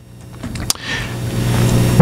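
A motor vehicle's low engine rumble and hiss growing steadily louder, with a single sharp click about two-thirds of a second in.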